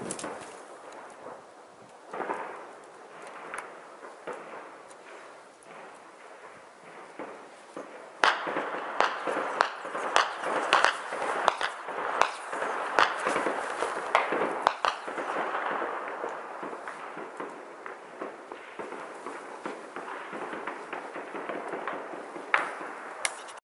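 Gunfire during an armed clash: scattered single shots at first, then, from about eight seconds in, a denser stretch of sharp cracks and rapid bursts that thins out again toward the end.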